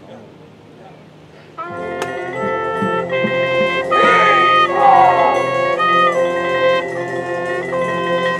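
High school marching band brass entering about a second and a half in, playing loud sustained chords that change pitch every half second or so, with a single sharp percussion hit just after the entrance.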